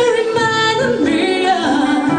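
Live band playing: a lead singer holds long, wavering sung notes over acoustic and electric guitars and congas.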